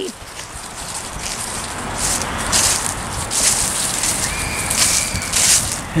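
Wind buffeting the microphone outdoors, with several short rustling bursts and a faint steady tone lasting about a second near the end.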